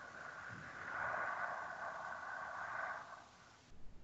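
A faint, long breath from a woman lying in bed, about four seconds of breathy airflow that swells in the middle and fades shortly before the end, heard through a video call's audio.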